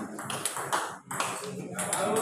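Table tennis rally: a celluloid ball clicks off rubber-faced paddles and bounces on the table, several sharp ticks in two seconds.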